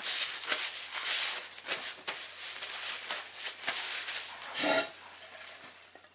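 Handling noise: irregular rustling with many light clicks and knocks, as things are moved about on a table, with a louder burst of rustling near the end.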